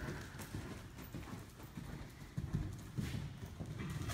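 Horse cantering on the sand footing of an indoor arena: a steady run of low, dull hoofbeats, several a second.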